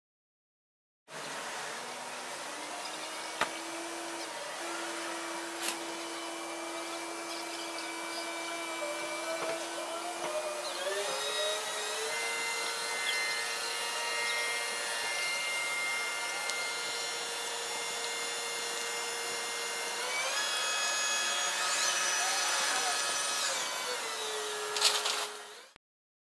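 Large mobile crane running under load as it hoists a heavy structure, a steady mechanical whine from its engine and hydraulics. The pitch steps up about ten seconds in and again later, then falls near the end before the sound cuts off.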